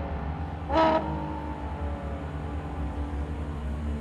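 Ferrari FXX-K's V12 hybrid engine running with a low, steady rumble as the car pulls away slowly, with a short rise in pitch about a second in.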